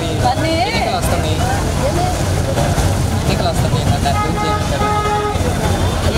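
A vehicle horn sounds about four seconds in, one steady held note lasting a little over a second, over a constant low rumble of road traffic; voices are heard in the first few seconds.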